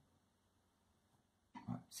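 Near silence: quiet room tone during a pause in speech, with a man's voice starting again near the end.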